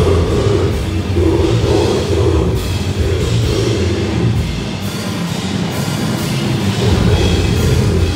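A brutal death metal band playing live, with a drum kit and amplified instruments, loud and dense throughout.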